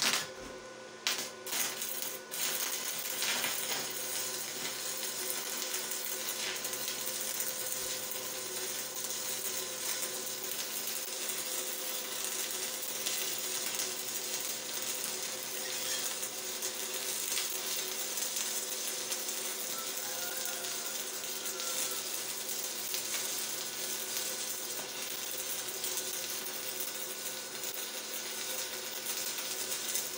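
Stick (MMA) welding arc from a Deko 200 inverter welder: a few sharp pops in the first two seconds as the electrode is struck to light the arc, then a steady crackle as the bead is run.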